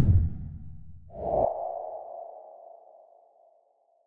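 Outro logo sound effect: a deep whoosh with a low rumble that dies away over the first second and a half, then a single sustained mid-pitched ringing tone that starts about a second in and fades out over the next two seconds.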